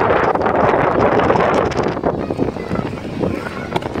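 Wind buffeting the microphone outdoors, with faint background voices; it eases off about halfway through.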